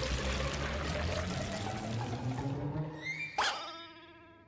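Water pouring from a tap into a wooden bathtub, a steady rush that fades out after about two and a half seconds. About three seconds in, a sharp pitched cartoon sound effect rings out and dies away.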